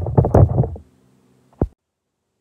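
Hand-held lemon squeezer pressing lemon halves: a burst of clacking and squishing in the first second, then a single sharp knock.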